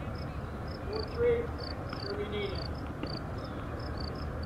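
Steady rhythmic high-pitched chirping, like a cricket, in short pulses often paired, a few a second, over a low outdoor background. A brief distant voice calls out about a second in and again about two seconds in.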